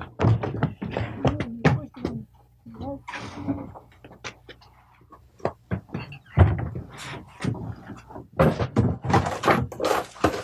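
People's voices talking, with scattered sharp knocks and taps; the voices drop away for a few seconds in the middle.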